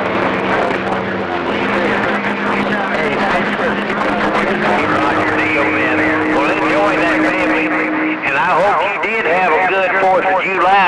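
CB radio receiving long-distance skip on channel 28: weak, garbled voices of several stations over static, with steady low whistle tones underneath. About eight seconds in, the whistles stop and one voice comes through stronger and clearer.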